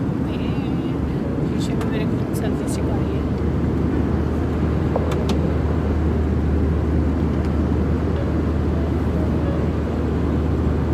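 Airbus A320 cabin noise: a steady rumble of engines and airflow with a low hum that grows stronger about three seconds in. A few faint clicks come in the first few seconds.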